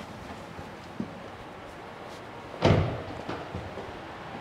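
A car door on an Aurus Senat limousine shutting with a single loud thud about two-thirds of the way in, after a faint click about a second in.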